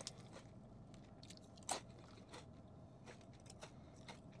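A person chewing crunchy Fritos Flavor Twists corn chips: a few faint, scattered crunches, with one louder crunch about two seconds in.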